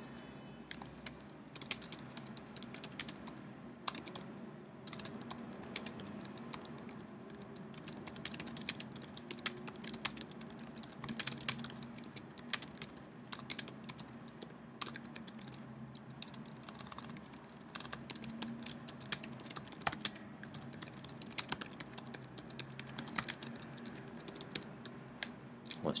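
Typing on a computer keyboard: a long run of quick, irregular key clicks as a sentence is typed out.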